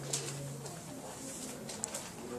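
A man's voice giving a brief low, steady hum at the start, then faint room noise with a small click near the end.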